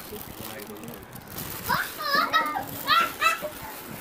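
Young children's high-pitched voices calling out as they play, several short calls in the second half. Before them, a plastic bag and foil wrapping rustle and crinkle as a hand rummages in it.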